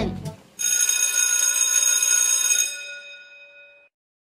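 Electric bell ringing as a school-bell sound effect: it rings steadily for about two seconds, then dies away.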